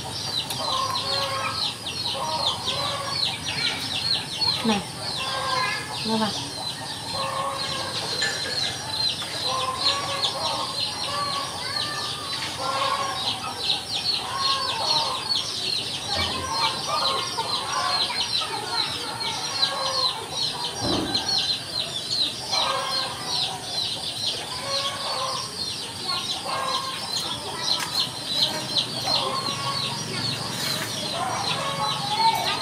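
Chickens clucking, over a continuous stream of fast, high peeping calls.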